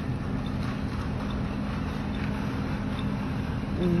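Street background at a city bus and tram stop: a steady low rumble of traffic with a steady hum, and faint high ticks repeating a little more than once a second.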